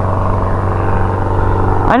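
Airplane engine droning steadily as it flies over.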